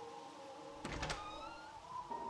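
A soft thunk about a second in, followed by a short, slightly rising creak, over a sustained musical drone.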